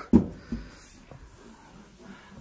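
A hand slapping the Honda Civic's sheet-steel quarter panel: one dull thump just after the start and a lighter knock about half a second later, then quiet room noise.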